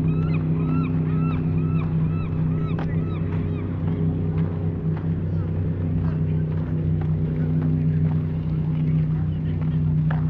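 A steady low engine drone runs throughout. In the first few seconds it is joined by a run of short repeated high calls, about three a second.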